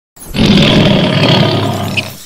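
Tiger roar sound effect: one long, loud roar starting a moment in and easing off slightly toward the end.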